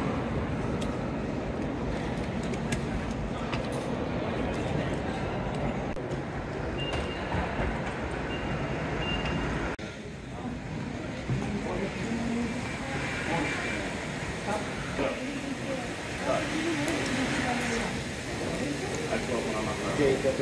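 Busy airport terminal hall ambience: a crowd talking all around, over a steady hubbub. About halfway through the background changes abruptly and single voices stand out more.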